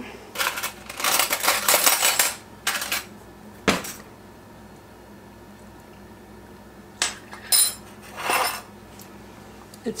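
Kitchen utensils and dishes clinking and scraping on a counter, in a few short spells with a sharp click about four seconds in and a quiet stretch before three brief sounds near the end.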